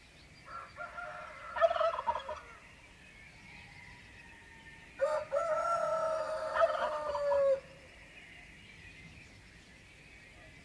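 A rooster crowing twice: a broken call about half a second in, then a longer, fuller crow of about two and a half seconds from about five seconds in, dropping in pitch as it ends. Faint steady distant birdsong runs underneath.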